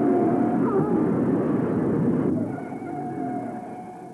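Loud, muffled roar of stock cars at racing speed as one spins out, on old film audio; it dies down about two and a half seconds in.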